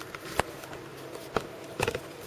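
Handling noise as the camera is moved: a few sharp clicks and knocks, the loudest about half a second in, with a cluster near the end, over a steady low hum.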